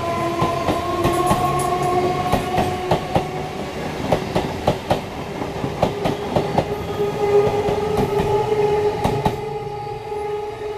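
Old EMU local train running past close by, its wheels clacking irregularly over rail joints, with a steady whine underneath.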